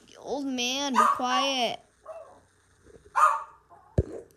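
A pet dog whining in a long, drawn-out call that rises and falls in pitch, in two joined parts over about a second and a half. About three seconds in comes one short, rougher sound.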